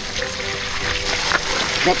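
Strong jet of water gushing steadily from the outlet pipe of a homemade drum water pump, splashing over a hand and onto the ground.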